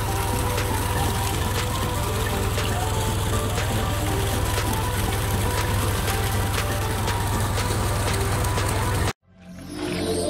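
Water gushing steadily from the delivery pipe of a 2 HP submersible borewell pump. The sound cuts off abruptly about nine seconds in.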